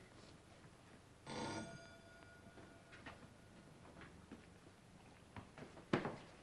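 Electric doorbell giving one short ring about a second in, its tones ringing on and fading. Faint knocks follow, with a sharp thump near the end.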